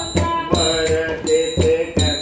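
Devotional bhajan: a man and a woman singing with a hand-played two-headed barrel drum (dholki) keeping a steady beat, a stroke roughly every third to half second.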